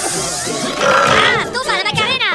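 High-pitched cartoon character voices babbling in gibberish, their pitch sweeping up and down in arching glides, over music.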